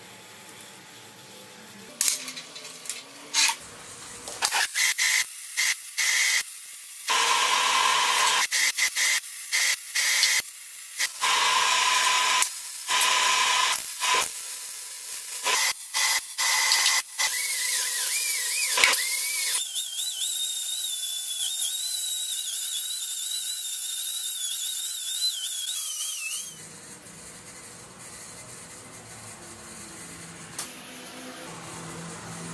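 MIG welder arc crackling and hissing in a run of short welding bursts, stop-start, a few seconds apart. Later a longer unbroken stretch of hiss with a wavering high whine runs for about six seconds before cutting off.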